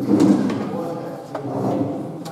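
Speech: a man's voice talking, loudest in the first half second.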